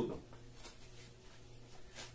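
Quiet room tone with a faint steady low hum, after the last syllable of a man's speech at the very start.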